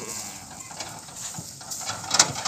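Loaded bullock cart being pulled over grassy ground: a steady rustling noise of wheels and hooves through the vegetation, with a few scattered knocks and one dull thump.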